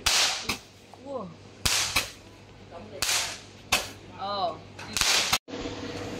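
Fireworks going off in the sky: a series of about seven sharp bangs at irregular intervals, some in quick pairs.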